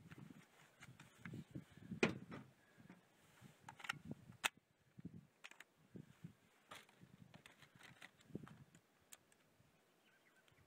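Faint handling noise: scattered light clicks and soft knocks, with a sharper click about two seconds in and a few more near the middle.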